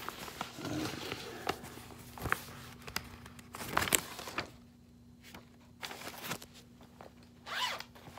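Zipper on a leather wallet being pulled, in short pulls, one about four seconds in and another near the end, among small clicks and rustles of handling.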